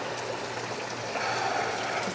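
Water trickling steadily in aquarium tanks, over a low steady hum.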